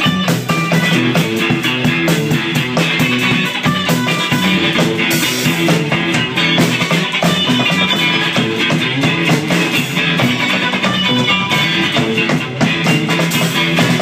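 A rock band playing live: electric guitars over a drum kit in an instrumental passage, without singing.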